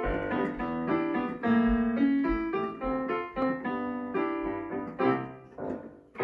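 Digital piano played with both hands: a flowing passage of notes and chords, several a second. The phrase winds down and the last notes die away near the end.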